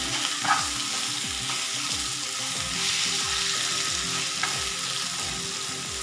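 Masala-coated chicken pieces frying in oil in a pan, with a steady sizzle and a metal spatula scraping and turning them in a regular rhythm of nearly three strokes a second.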